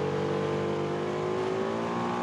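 Ducati Panigale superbike's V-twin engine heard onboard, its revs sinking slowly and steadily while off the throttle braking into a tight corner.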